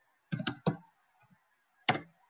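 Computer keyboard keystrokes: three quick key clicks about a third of a second in, then a single one near the end.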